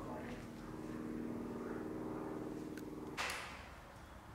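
A steady low hum of several even pitches that cuts off suddenly a little after three seconds, where a single short, sharp noise sounds and fades.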